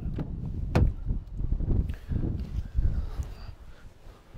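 Citroen Grand C4 Picasso driver's door pulled open by its keyless-entry handle, the latch giving one sharp click about a second in. This is followed by the shuffling and rustling of someone climbing into the driver's seat.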